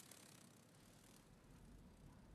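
Near silence: faint room tone with a low rumble.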